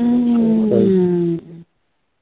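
A person's voice holding one long, slightly falling wailing note for about a second and a half in prayer, heard through a telephone conference line.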